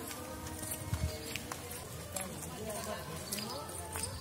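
Footsteps on a dirt village path, with faint distant voices in the background.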